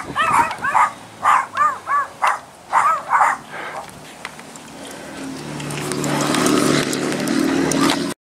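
A dog barking in a quick string of short yapping barks, two or three a second, which stop about three and a half seconds in. A low droning sound then swells over the last few seconds.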